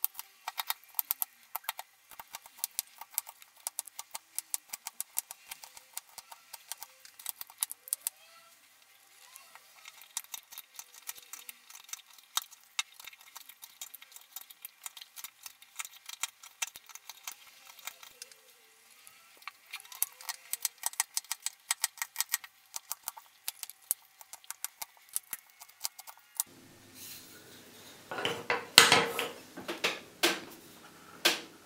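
Small carving knife cutting notches into a wooden stick by hand: a quick series of short, crisp clicks and snicks as each chip is sliced out, coming in clusters with brief pauses. Near the end, a few seconds of louder handling noise.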